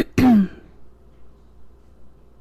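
A woman clearing her throat at the very start: two short sharp catches, then a voiced "hm" that falls in pitch.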